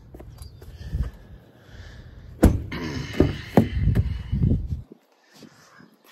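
A pickup truck's rear door latch clicking open about two and a half seconds in, followed by knocks and handling noise as the door is swung open; the sound drops out suddenly near the end.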